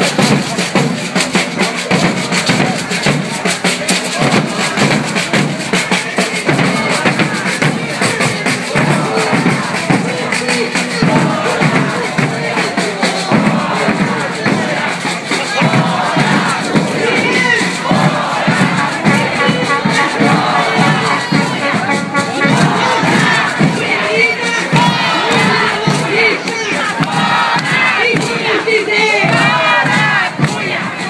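Hand-held frame drums beating fast among a marching crowd, giving way in the second half to a large crowd shouting and cheering.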